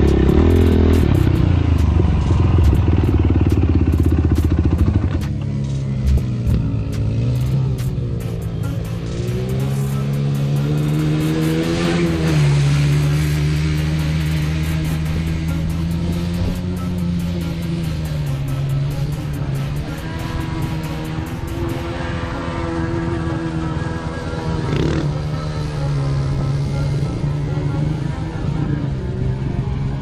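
A single ATV engine revving as it rides across sand and through shallow water, its note rising and falling again and again with the throttle.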